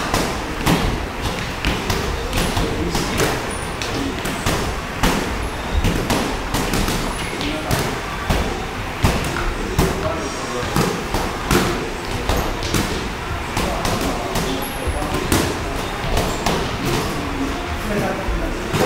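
Boxing sparring: irregular thuds of gloved punches landing, mixed with footwork on the ring canvas, with voices in the background.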